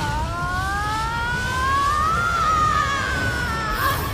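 Animated magic-attack sound effect: a sustained, siren-like tone that rises in pitch for about two and a half seconds and then eases down, over a low rumble, as a lightning spell is unleashed.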